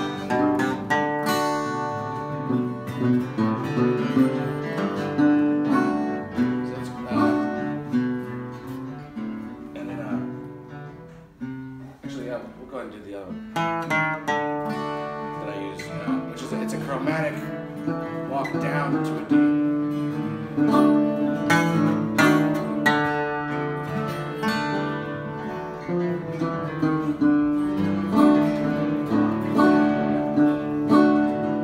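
Acoustic guitar played in old-time style: downpicked bass notes and chords with single-note bass runs walking from a G chord up toward D. The playing thins out briefly near the middle, then carries on.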